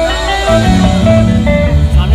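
Live band playing the opening of a slow Tamil song over a PA: a guitar carries a melody of held, bending notes, and bass and low chords come in about half a second in.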